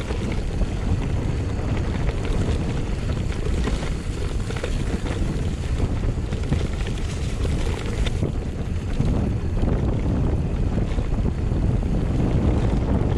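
Wind buffeting the microphone of a mountain bike on a grassy downhill run, with small rattles and knocks from the bike over the bumpy trail. The hiss eases off about eight seconds in.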